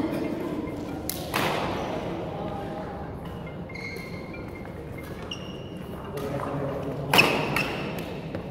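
Badminton doubles rally in a sports hall: sharp cracks of racquets striking the shuttlecock, ringing in the hall, the loudest a little after seven seconds. Between them, short squeaks of shoes on the wooden court floor.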